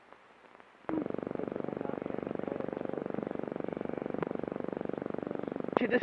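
A steady mechanical whirr with a fast, even pulse starts suddenly about a second in and runs on unchanged, heard through the hiss of an old optical film soundtrack.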